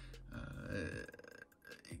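A man's drawn-out "uh", held for most of a second as he hesitates mid-sentence, followed by a short pause before he speaks again.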